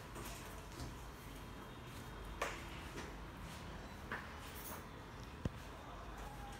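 Quiet room noise with a few faint soft knocks and a sharp small click about five and a half seconds in.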